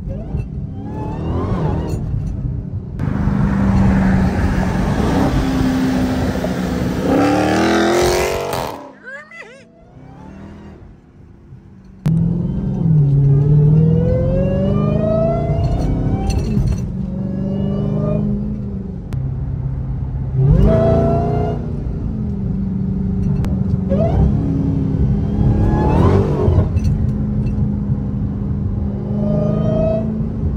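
Dodge Hellcat's supercharged V8 heard from inside the cabin, pulling hard in several bursts. Each pull rises in pitch over a few seconds, then drops, with a short quieter lull about a third of the way through.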